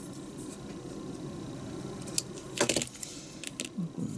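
Light clicks and clatters of hard plastic model-kit parts and a hobby knife being handled and set down, with a cluster of sharper clicks about two and a half seconds in, over a steady low hum.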